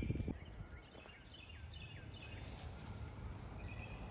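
Faint outdoor ambience with a low background rumble and distant birds chirping: a run of short falling chirps in the first half, then a thin held note near the end.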